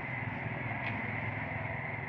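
Steady street traffic noise: a low, even hum of vehicle engines running.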